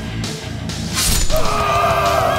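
Background music with a sudden crash-like sound effect about a second in, followed by a held musical note.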